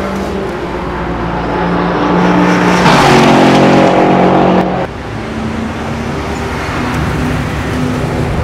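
A race car's engine at high revs on the straight. The note swells to its loudest about three seconds in, holds there, and drops off abruptly just before five seconds, leaving a quieter engine running on.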